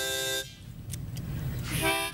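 Harmonica chord held, then cutting off about half a second in; after a short pause, short harmonica notes start again near the end.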